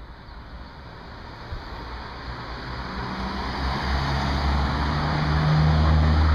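A road vehicle approaching along the street, its engine and tyre noise growing steadily louder.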